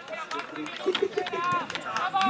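Footballers calling and shouting to each other across the pitch during play, with a few sharp knocks among the voices.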